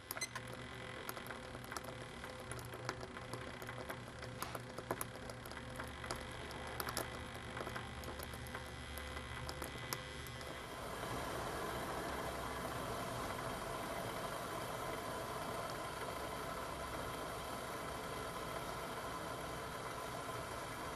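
Canteen cup of water heating over an Esbit fuel tablet topped up with alcohol: faint scattered ticks and clicks at first, then from about ten seconds in a steady soft rushing hiss as the water nears the boil.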